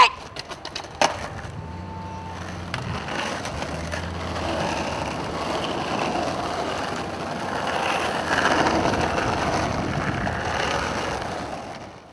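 Skateboard clacking sharply a few times, then its wheels rolling on asphalt in a steady rumble that grows louder as the rider is towed behind a van.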